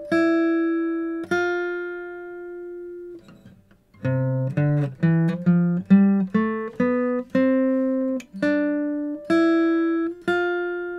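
Acoustic guitar played with a pick, one note at a time, in a C major scale exercise. Two notes ring out, then after a short pause a quick rising run of about a dozen notes starts about four seconds in, settling into slower, longer-held notes near the end.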